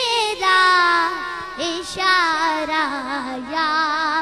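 A boy's voice singing an Urdu naat, drawing one phrase out in long held notes with a wavering vibrato that bend and glide between pitches.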